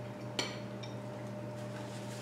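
Dishware clinking twice over a steady low electrical hum: a sharp click with a short high ring about half a second in, then a fainter one just after.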